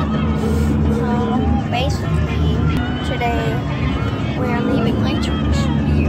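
Steady rumble inside a moving car's cabin, under a wavering voice and music.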